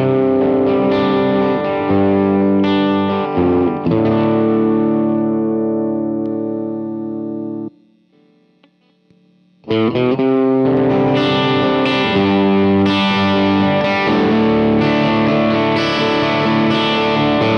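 Electric guitar, a T-style Esquire, played through a Groff Imperial overdrive pedal into a Matchless DC-30 amp set clean, giving overdriven chords. A long held chord is cut off suddenly about halfway through, leaving about two seconds of near silence, and then strummed chords start again in a steady rhythm.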